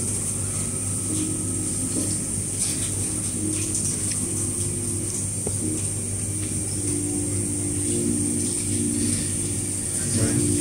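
Restaurant room tone: a steady low hum and a constant high hiss, with faint held tones drifting underneath and a few soft clicks.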